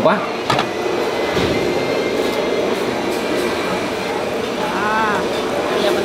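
Steady rushing background noise with a few light clicks near the start.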